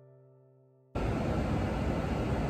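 A held piano chord fading away. Just under a second in it cuts off abruptly into a loud, steady rushing noise of the airport terminal's background.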